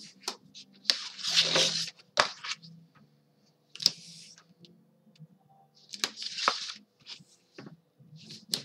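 Double-sided score tape being pulled off its roll and pressed down along the edge of chipboard: several short rasping peels, the loudest about a second in, with sharp clicks and taps between them.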